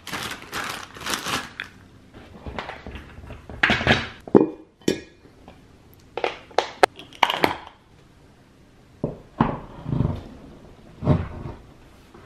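Office chair assembly handling noises: plastic packaging crinkling, sharp clicks and clatter of the metal hardware and plastic chair parts, and a few dull thuds as the parts are set down and moved.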